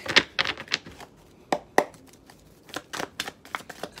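A deck of tarot cards being shuffled by hand: a string of sharp card clicks and flicks, a few louder snaps in the first two seconds, then a quick run of lighter clicks near the end.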